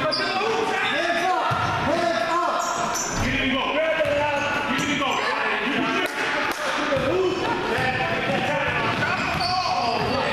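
Many overlapping voices of spectators and players shouting during a youth basketball game, with a basketball bouncing on the hardwood floor. The sound echoes in the gymnasium.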